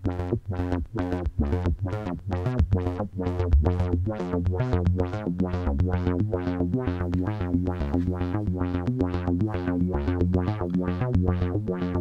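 Behringer Neutron analog synthesizer playing a fast repeating sequence of short bass notes, about four or five a second, with its filter cutoff swept by an LFO sent from the CV Mod iOS app through the Neutron's attenuator.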